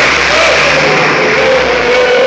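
A crowd of Danish football fans singing a chant together, mostly men's voices holding long, wavering notes over a steady crowd din.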